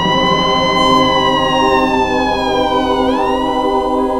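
Ambulance siren wailing: its pitch rises, falls slowly for about three seconds, then rises again.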